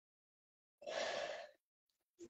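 A person sighing: one breathy exhale of about half a second, starting a little under a second in.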